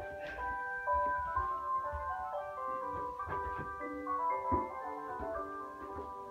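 Music: a melody of held notes stepping up and down, with a few short knocks over it.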